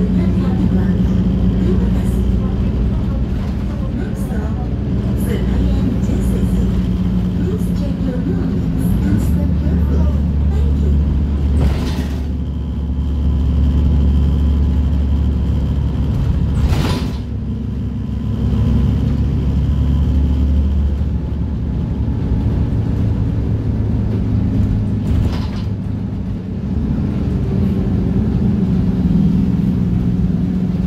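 City bus heard from inside while it drives: a steady low drivetrain hum with road noise, which deepens into a stronger low rumble for several seconds in the middle. There are short knocks about twelve, seventeen and twenty-five seconds in.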